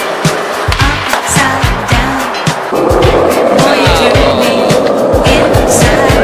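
Skateboard wheels rolling on street pavement: a steady rolling noise that comes in suddenly a little before halfway. It plays over background music with a steady beat.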